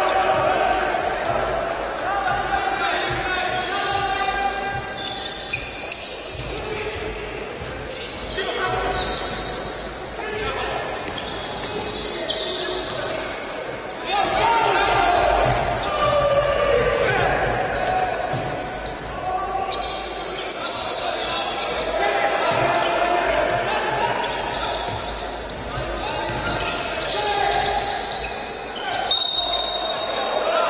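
Live basketball game court sound in a large gym: a ball bouncing on the hardwood floor and players' and coaches' voices calling out, echoing through the hall.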